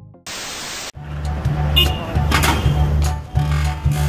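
A burst of static-like hiss lasting about half a second, a transition effect between clips, then background music with a heavy, regular bass beat.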